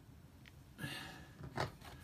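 A soft rustle about a second in, followed by a couple of light clicks, over a quiet room: small handling noises.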